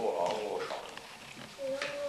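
A group of young children's voices calling out together, then a held sung note starting near the end, as they chant or sing to St. Nicholas.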